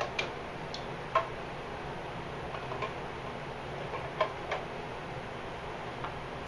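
Sparse light clicks and taps from hands and a small glass dish against a stainless steel mixing bowl, about seven in all, the sharpest about a second in, over a steady low room hum.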